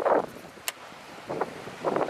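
Wind buffeting the microphone over open sea, with a single sharp click a little under a second in.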